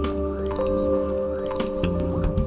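Live band playing an instrumental passage: held chord notes over a pulsing bass and drums, with short cymbal hits and bubbly synthesizer sounds.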